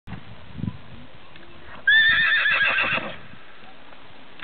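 A horse whinnying once for about a second, starting about two seconds in, its pitch wavering in quick pulses as it falls away. A soft low thump comes about half a second in.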